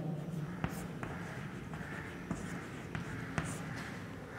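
Chalk writing on a blackboard: faint taps and short scratches, about half a dozen strokes, as a word is written.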